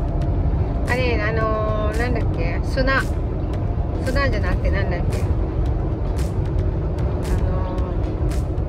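Steady road and engine noise inside a car's cabin at highway speed, with a song playing over it: a singing voice about a second in and again around four seconds, over a regular beat.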